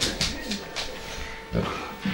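Neapolitan mastiffs making a string of short, pig-like animal noises during rough play, with a louder one near the end.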